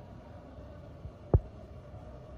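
A steady low hum with a single sharp, low thump about a second and a half in, preceded by a fainter knock.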